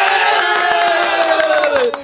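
A small group of men cheering together in one long held yell, its pitch sliding slowly down before it breaks off near the end.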